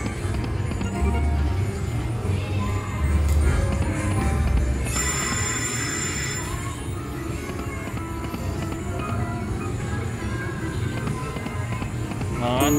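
Lock It Link Hold On To Your Hat video slot machine playing its reel-spin music over repeated spins, with a steady bass beat. A bright chiming jingle rings out about five seconds in.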